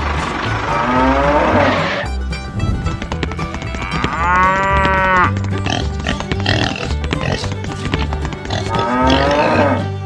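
Background music with a steady bass line, with three farm-animal call sound effects laid over it: one about a second in, one in the middle and one near the end.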